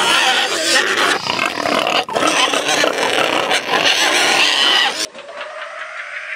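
Pigs squealing and grunting loudly, broken by short gaps. About five seconds in they cut off and a quieter electronic tone starts, rising steadily in pitch.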